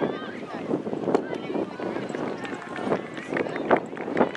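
Indistinct voices of players and onlookers calling across an open playing field, broken by a few sharp knocks, the loudest about a second in and near the end.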